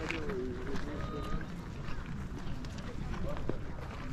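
Wind buffeting the microphone, with voices of people nearby, clearest in the first second.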